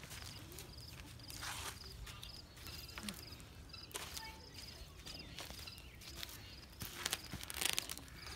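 PVC pipes being handled and slid over woven landscape fabric as they are set into fittings: several short scrapes and rustles, the loudest near the end.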